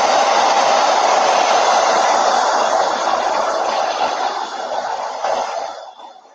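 Handheld hair dryer blowing steadily over a chalk-paste stencil to dry the paste. It grows somewhat quieter in the second half and switches off near the end.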